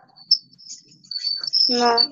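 Quiet video-call audio with a thin, high-pitched chirping tone that comes and goes, insect-like, then a brief spoken "No" near the end.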